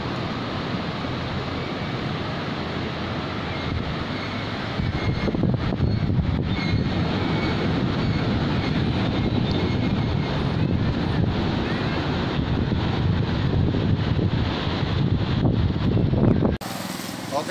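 Steady rushing noise of ocean surf and wind buffeting the microphone, growing louder about five seconds in.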